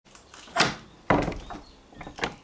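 A wooden door being pushed open: two loud, sharp knocks about half a second apart, then a softer one.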